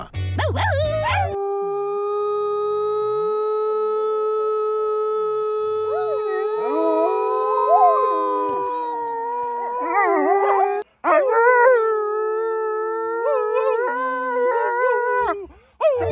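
Wolves howling in chorus, with a woman howling along. The howls are long and held, several voices overlap and slide in pitch, and they break off briefly about eleven seconds in before starting again.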